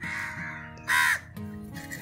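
Background music with steady held notes, and one short, loud bird call about a second in.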